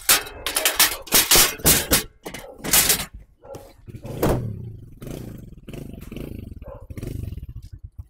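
Metal loading ramp clattering and banging as it is slid into a pickup truck's bed, with a heavy knock about four seconds in. After that, a Win 100 motorcycle's engine idles steadily, each beat distinct.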